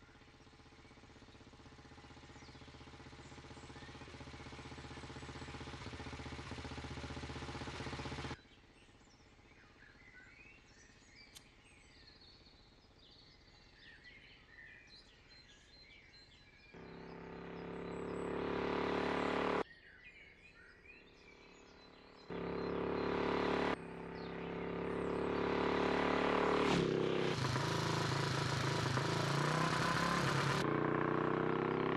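A motorcycle engine running at a steady pitch, growing louder as it approaches, then cut off abruptly about eight seconds in. Birds chirp in the quieter gaps, broken by more spliced stretches of engine sound that swell and stop suddenly. Near the end the engine's pitch shifts as it revs.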